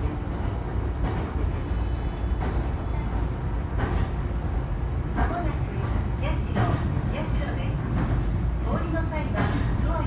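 A passenger train running at speed, heard from inside the carriage as a steady low rumble of wheels and running gear, with faint voices now and then.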